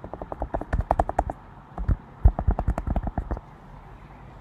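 Typing on a computer keyboard: two quick runs of key clicks with a short pause between them, ending a little before the end.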